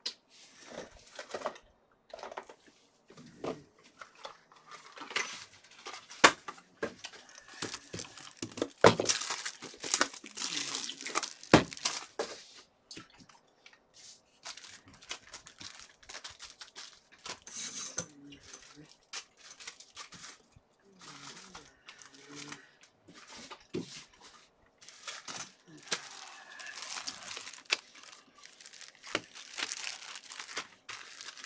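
Trading-card packaging being opened by hand: cardboard and wrapper tearing and crinkling in irregular bursts, with scattered clicks and handling noises, the loudest tearing in the middle.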